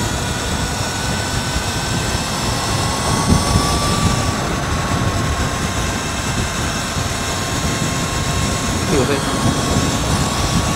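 Wind buffeting the microphone and tyre noise while a Sur-Ron electric motorbike rides at road speed, with a faint steady high whine from its electric motor running on a BAC4000 controller.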